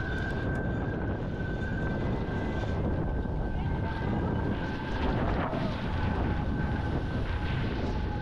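Steady rushing noise of wind and water under way, with a low rumble and a thin, steady high whine.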